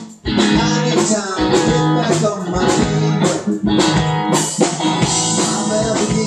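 Live band of electric guitar, bass guitar and drum kit playing a rock-reggae song, with a momentary break right at the start before the band comes straight back in.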